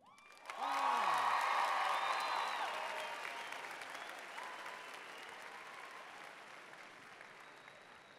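A large crowd in an arena applauding and cheering, with shouting voices over the clapping. It swells up about half a second in, then slowly dies away.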